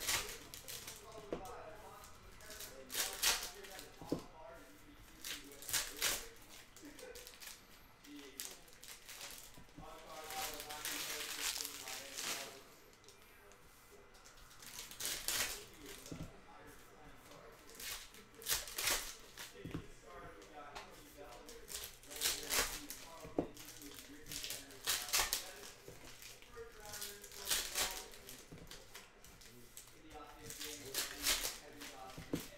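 Foil trading-card pack wrappers being torn open and crinkled, with the cards inside slid and shuffled, in repeated bursts every few seconds.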